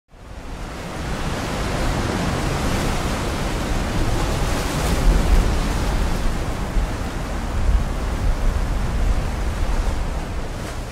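Ocean surf breaking on a rocky shore: a steady rushing wash with deep swells of rumble, fading in over the first second.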